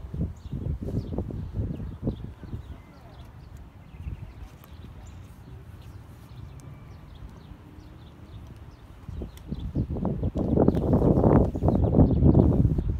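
Low rumbling noise on the phone's microphone, in uneven bursts near the start and louder again over the last two seconds. Faint, short chirps of small birds come through in the quieter stretch between.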